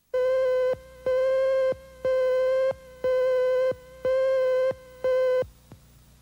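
Electronic beep tone sounding six times, each beep a steady, buzzy mid-pitched tone about half a second long, roughly one a second, stopping shortly before the end.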